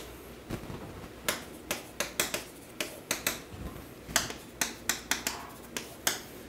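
Chalk striking and scratching on a chalkboard as characters are written: a quick, irregular string of sharp taps with short pauses between strokes.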